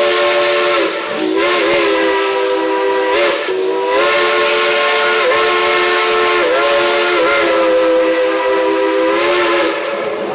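Steam locomotive's multi-chime whistle played as a tune in a run of about six long, chord-toned blasts with short breaks, the pitch sliding at the start of several blasts, over steady steam hiss. The whistling stops shortly before the end.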